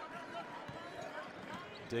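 Basketball game court sound: a ball being dribbled on a hardwood floor, with faint voices from players and crowd in the arena.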